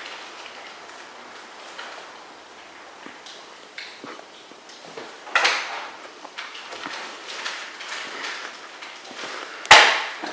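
Quiet room with faint small knocks and rustles. A louder rustling burst comes about five seconds in, and a sharp knock just before the end is the loudest sound.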